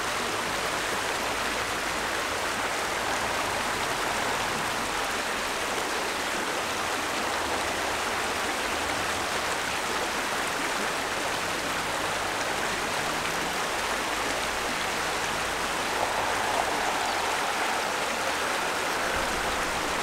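Stream water running steadily, a constant rushing that swells slightly near the end.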